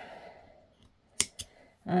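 Spring-loaded yarn snips cutting a strand of yarn: one sharp snip a little over a second in, followed by a softer click as the blades spring back open.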